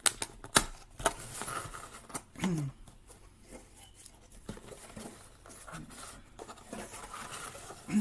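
Cardboard camera box being opened by hand: two sharp snaps of flaps and tabs near the start, then scattered clicks and the rustle of cardboard and paper sliding as the inner box is pulled out.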